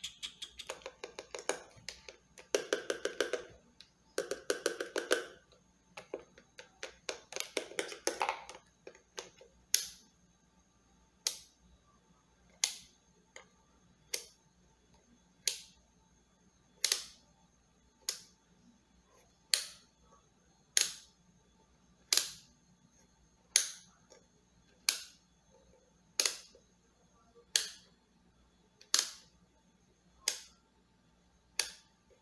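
A handheld digital multimeter handled close to the microphone. For the first eight seconds or so it gives dense bursts of rapid clicking, then single sharp clicks at an even pace, roughly one every second and a half.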